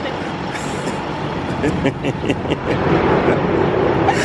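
Steady city street traffic noise, with voices mixed in.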